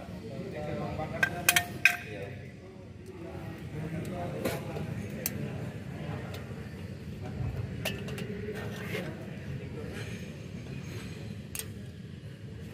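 Light metallic clinks and clicks of pliers against steel drum-brake parts, the shoe, springs and backing plate, as a brake shoe and its spring are fitted. The clinks come singly and irregularly, with a quick cluster of several about a second and a half in.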